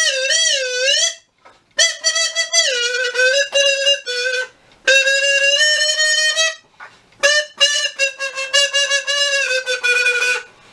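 A reedy wind instrument playing a simple tune in held notes, in four phrases with short breaks between them. The first note wavers up and down, and one note in the middle is held for nearly two seconds.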